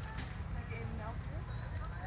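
Overlapping chatter of several people talking at a distance, over a steady low rumble, with a sharp click about a quarter second in.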